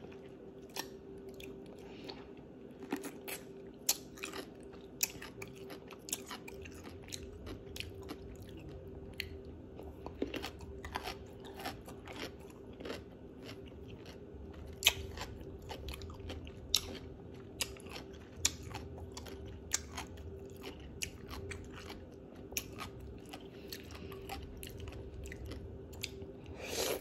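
Close-miked crunching and chewing of a whole baby dill pickle: irregular sharp crunches as it is bitten and chewed, over a steady faint hum.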